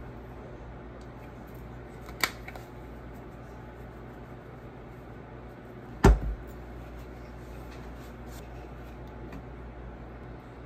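Kitchen items being handled and set down over a steady low hum: a sharp click about two seconds in, then a heavier thump with a brief rattle about six seconds in.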